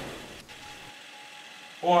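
Low room noise with a single faint click about half a second in, then a voice exclaims "Oy" near the end.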